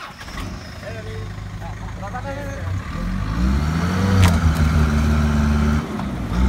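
Light truck's engine revving under load as it tries to drive its mired rear wheel up out of a mud hole onto wooden boards. It grows louder and from about three seconds in is held at higher revs.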